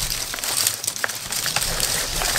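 Loose plastic packing straps rustling and crinkling as they are pulled off a flat-packed board, with a few sharp clicks.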